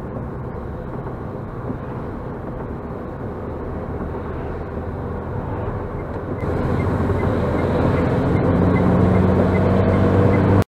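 In-cabin road and engine noise of a car on a wet road. About six seconds in, the engine grows louder and steadier as the car accelerates to overtake, and a faint turn-signal tick comes in about three times a second.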